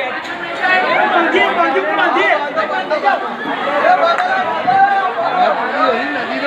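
Several people talking at once: loud, overlapping chatter of voices.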